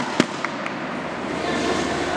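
Two sharp slaps in quick succession, then a few lighter ones, from a nanquan (Southern Fist) wushu performer's hand strikes, over a steady murmur of background noise.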